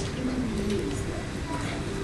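Indistinct distant voices murmuring over the steady hum of a large indoor hall.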